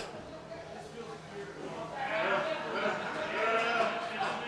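Faint, drawn-out, wavering shouts from people's voices in a large hall, a little louder from about halfway in.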